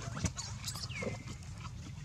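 A baby monkey gives one short, high cry that slides down in pitch about a second in, with a few light clicks of movement around it.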